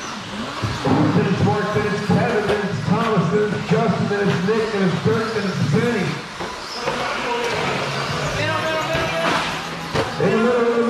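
Indistinct race commentary in a man's voice, with music playing behind it.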